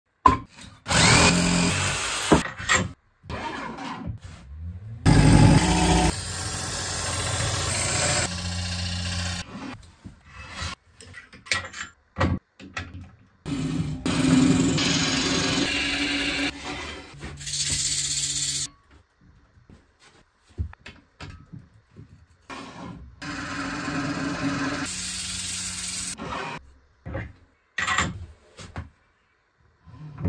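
A run of short, abruptly cut woodworking sounds: a wood planing machine running and planing a board, and a lathe gouge cutting wood spinning on a wood lathe, broken by brief quiet gaps.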